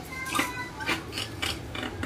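Hands handling a plastic-wrapped parcel: a handful of short, separate clicks and rustles as it is opened.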